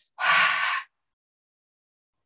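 A woman's single deep exhale through the mouth, lasting under a second, letting go of a full breath that was held in a qigong lung-cleansing exercise.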